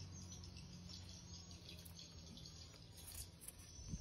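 Near silence: a faint steady low hum, with a faint tick just before the end.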